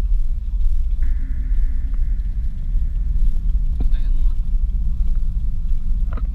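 Car driving at a steady speed: a continuous low rumble of engine and road noise, with a faint thin high tone from about a second in, lasting about two seconds.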